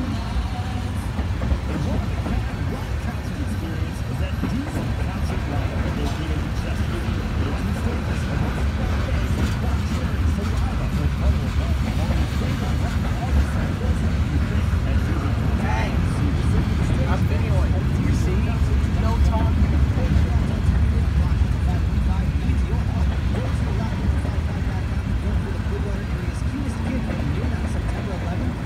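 Freight train cars rolling past: a steady low rumble of steel wheels on the rails, with occasional faint clicks, swelling slightly in the middle.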